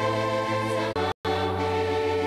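Church music accompanying the Mass: sustained held chords that change a few times, cutting out for an instant just after a second in.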